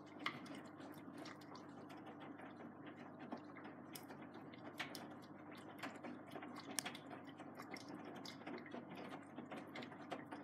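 AEG Lavamat Protex front-loading washing machine on a cold jeans wash, its drum turning and tumbling the wet load: a steady motor hum under the swish of the laundry, with scattered sharp clicks and knocks as the load drops inside the drum. The tumbling lasts about ten seconds, then the drum goes still.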